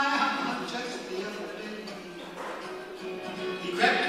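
A man singing to his own acoustic guitar. A held sung note ends at the start, the guitar carries on more quietly through the middle, and a new loud phrase comes in near the end.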